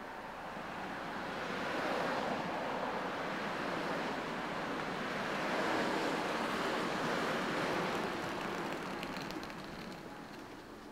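Road traffic passing on a street, a steady rush of tyres and engines that swells to its loudest around the middle and eases off near the end.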